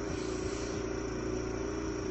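Steady mechanical drone of a pressure washer running, a constant hum with a few held tones that does not change.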